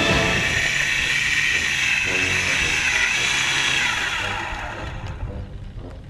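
RC model biplane's propeller engine running with a high, drill-like whine that drops in pitch and fades out about four seconds in, under background music.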